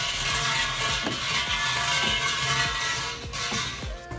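Brass suzu bells at a Shinto shrine rattling and jingling as the thick bell rope is shaken, over background music. The rattle fades out shortly before the end.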